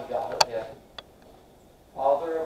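A man's voice speaking briefly, with a sharp click in the middle of the words and a fainter tick about a second in, then a pause.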